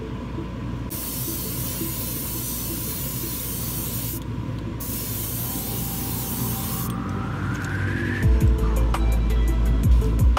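Paint being sprayed in two long hissing bursts with a short break between them. Near the end a rising whine and a louder low rumble come in.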